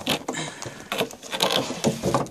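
Foam blocks and a rubber mold being handled and pulled out of a clear plastic box: irregular scraping and rustling of foam and plastic, with a few light knocks.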